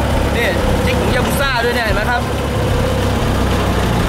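Fishing boat's engine running steadily, a constant low drone with a hum under it, while a man speaks briefly in Thai in the middle.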